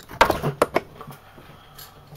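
A few sharp clicks and knocks close to the microphone within the first second, then faint room tone.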